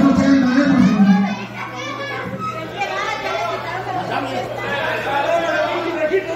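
Arena crowd voices: many people talking and calling out at once, loudest in the first second or so and then settling into a steady chatter. A steady low hum runs underneath.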